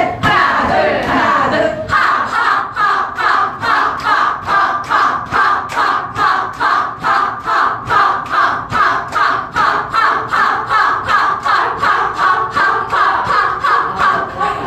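A group of women chanting short "ha!" cries together while tapping their chests in a steady rhythm, about three beats a second. The rhythm settles in about two seconds in.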